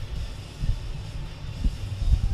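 Background music, faint, over a low uneven rumble.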